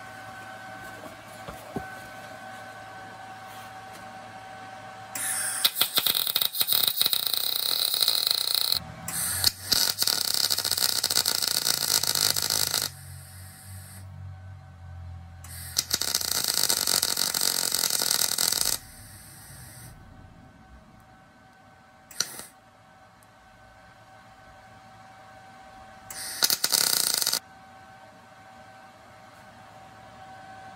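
MIG welder arc crackling as weld wire is laid into a hollow steel spark plug body to fill it: four runs of welding, about three and a half, three and a half, three and one second long, with pauses between. A faint steady hum fills the gaps.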